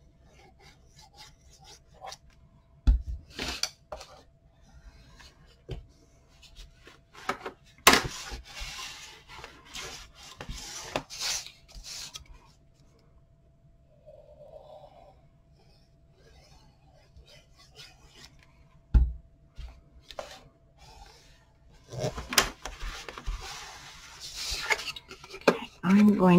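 Cardstock and chipboard rubbing and scraping as a cylindrical bottle is run along the paper to press it down, with short scrapes and taps in several bursts and louder handling near the end as the cover is lifted.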